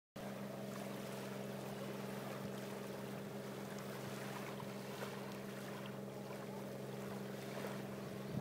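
A steady low hum of several fixed tones over a faint hiss, holding an even level throughout.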